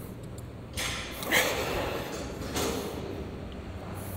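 A lifter's forceful exhalations of effort, two sharp noisy breaths about a second and a half apart, over a steady low hum.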